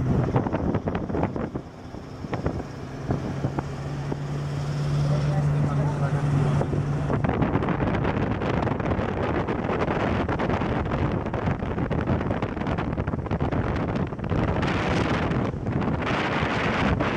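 Wind buffeting the microphone with road noise from a moving car. A steady low engine drone fades out about seven seconds in, and the wind noise carries on alone.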